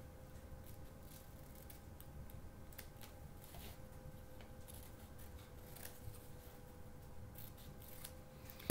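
Scissors snipping through a sheet of paper in short, irregular cuts, faint and spread through the whole stretch, as a paper shape is cut out along its lines.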